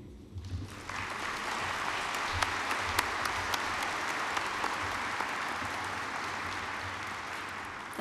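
Audience applauding, starting about a second in and easing off slightly near the end.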